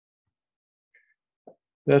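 Near silence, broken by a faint short click about one and a half seconds in; a man starts speaking right at the end.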